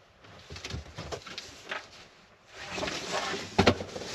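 A cardboard shipping box being handled and lifted: scattered light rustles and taps, then louder cardboard rustling with a couple of sharp knocks near the end.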